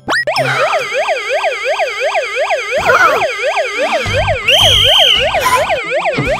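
Electronic yelp siren wailing fast, rising and falling about three times a second, with a short steady higher tone over it about four and a half seconds in.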